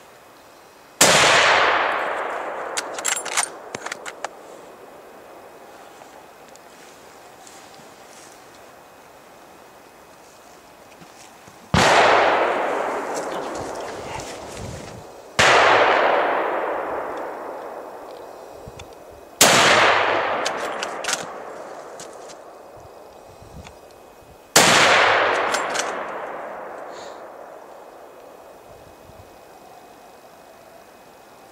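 Five hunting-rifle shots, irregularly spaced, each followed by a long echo rolling through the forest. A few sharp clicks follow the first shot.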